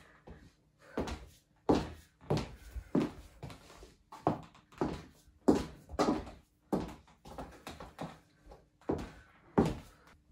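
Stiletto heel footsteps on a bare wooden floor: about a dozen sharp clicks at walking pace, roughly one every two-thirds of a second, with a couple of short pauses.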